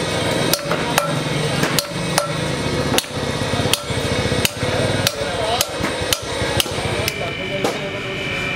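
Sledgehammer blows on a cracked six-cylinder truck cylinder head, driving in repair pins during a crack-pinning job. The sharp metallic strikes come about every half second, a dozen or so in all.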